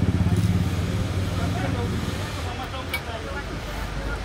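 A motor vehicle engine running close by, a low rapid pulsing that is loudest at first and fades after about two seconds, over street background voices.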